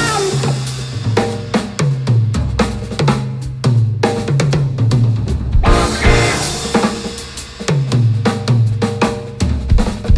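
Drum kit played in a busy blues-funk groove, with snare, bass drum and cymbal strikes out front and a bass line moving underneath.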